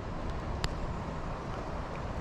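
Steady rush of shallow creek water running over rocks, with a low rumble of wind on the microphone and one small click about two-thirds of a second in.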